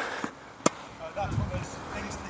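A single sharp crack of a tennis ball struck by a racket, about two-thirds of a second in, heard from across a court.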